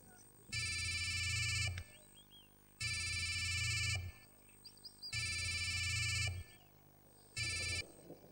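Mobile phone ringtone: a repeating electronic ring in bursts of about a second and a quarter, coming roughly every two and a quarter seconds. The fourth ring is cut short near the end as the call is answered.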